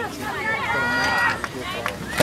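Spectators' voices close by at a baseball game, talking and calling out, with one drawn-out call about a second in.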